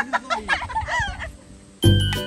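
A chicken clucking in a quick series of short calls for about a second, then music cuts in abruptly near the end.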